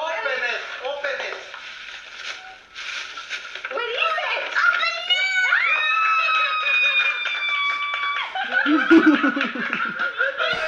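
A young boy's excited high-pitched shriek, gliding up and then held for about three seconds, with talking around it.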